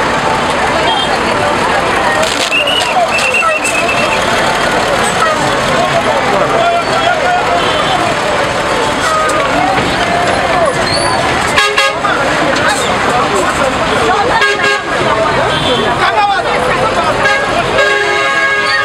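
Busy roadside street: many people talking over one another, with passing traffic and a few short horn toots.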